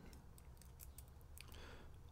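Near silence with a few faint metallic clicks: a steel tension wrench being handled and slid into a padlock keyway.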